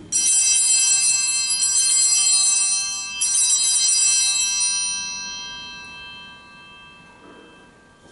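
Altar bells rung at the elevation of the chalice during the consecration. A cluster of small bells is shaken once, then again about three seconds in, and the ringing dies away over the next few seconds.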